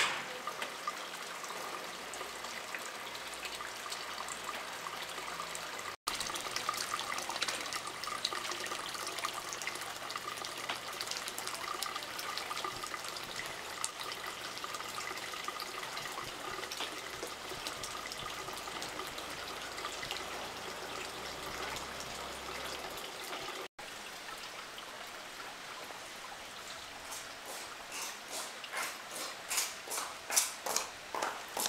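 Water trickling steadily, with many small drips and splashes. Near the end come regular footsteps on wet paving, about two a second.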